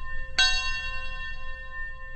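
A bell-like chime ringing with several clear, steady tones. It is struck again less than half a second in and rings on, slowly fading.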